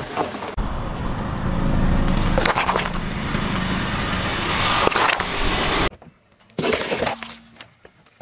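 A car tyre rolling slowly over things laid on asphalt and crushing them, wax crayons among them, with a steady engine and tyre rumble and a few sharp cracks and snaps as they break. Near the end the sound cuts away to a quieter scene with one more short crunch.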